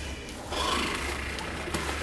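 Cling film crinkling and rustling as it is handled and peeled from a small cardboard box, getting louder about half a second in.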